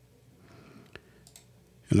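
A single short, faint computer mouse click about a second in, amid quiet room tone, as a point is placed on a line mask; a word of speech begins at the very end.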